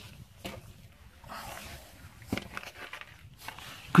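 Footsteps on a dry, sandy dirt trail: a few quiet, scattered scuffs and crunches.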